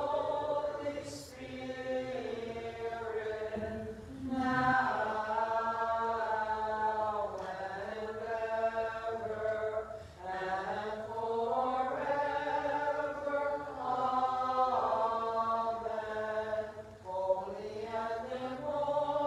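Byzantine liturgical chant: sung phrases with long held notes and short breaks about 4 and 10 seconds in.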